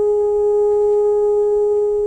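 An orchestra holding one long, steady note at a single pitch.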